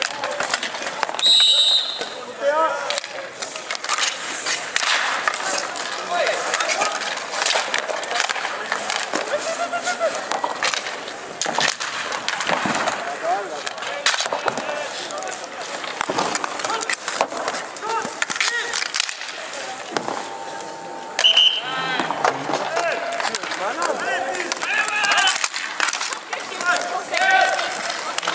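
Inline hockey play: skate wheels rolling on the court surface, with sticks and puck clacking in many sharp knocks, and players and spectators calling out. A short referee's whistle sounds about a second in.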